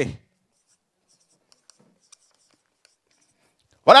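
A man's speaking voice breaks off just in, followed by a near-silent pause with a few faint scattered ticks and scratches. His voice returns near the end.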